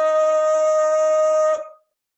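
A man's voice holding one long, steady sung note at full volume, cut off about one and a half seconds in.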